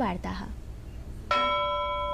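A bell-like chime sounding once, a clear ringing note of several pitches that starts suddenly a little over a second in and holds steady: the news bulletin's chime marking the change from one story to the next.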